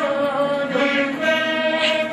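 A student ensemble of veenas playing Carnatic music, with voices singing the melody along. The notes are held and slide smoothly from one pitch to the next.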